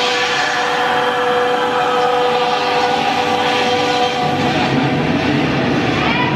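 A burst of hissing steam from a show-scene effect over a held, horn-like chord from the ride's soundtrack. A low rumble comes in about four seconds in.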